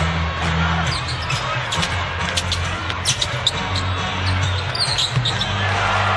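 Basketball game sound: a ball bouncing on a hardwood court, with several sharp knocks mostly in the middle, over arena music with a steady bass line.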